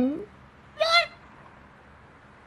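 A held vocal note ends with a quick dip in pitch at the very start. Just under a second in comes one short, high-pitched vocal call, then only faint room tone.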